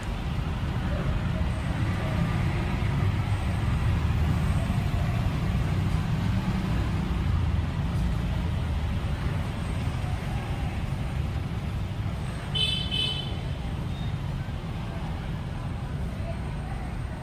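Steady low rumble of road traffic, with a short high-pitched horn toot about three-quarters of the way through.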